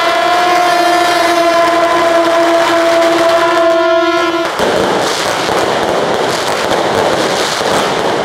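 A string of firecrackers going off in a dense, continuous crackle. A steady, horn-like pitched tone is held over it and cuts off about four and a half seconds in, leaving the crackle alone.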